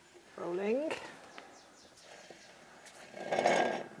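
A person's short voiced sound with a rising pitch about half a second in, then near quiet with a few faint ticks, and a brief breathy rushing noise near the end.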